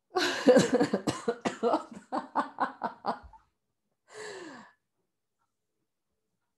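A woman laughing in a run of quick bursts for about three seconds that trails off, then a short breathy sigh falling in pitch.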